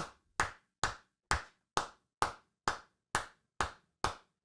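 Hands clapping in a steady rhythm, a little over two sharp claps a second with silence between them.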